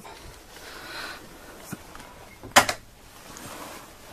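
Wooden sliding closet door being handled and slid along its track: a soft rubbing slide, a small click, then one sharp wooden clack about two and a half seconds in.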